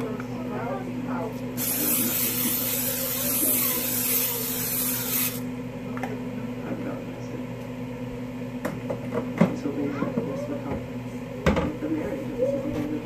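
Aerosol cooking spray hissing out of the can into a glass baking dish: one continuous spray of about four seconds, starting about a second and a half in and cutting off sharply.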